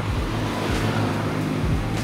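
A Mazda MX-5 RF sports car driving past close by: a steady rush of engine and tyre noise on the road.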